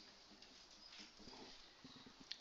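Faint squeak and scratch of a marker writing letters on a whiteboard.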